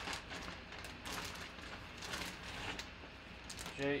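Clear plastic zip-top bag crinkling and rustling in irregular bursts as a football is worked out of it by hand.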